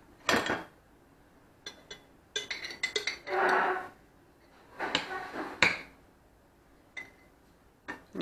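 Metal spoon scraping mayonnaise out of a jar and tapping it off into a bowl: scattered clinks and knocks with pauses between, and a longer scrape about halfway through.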